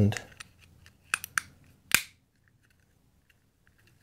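Small plastic light case being fitted back together by hand: a few sharp plastic clicks, two close together about a second in and a louder one near the middle, with faint handling ticks between.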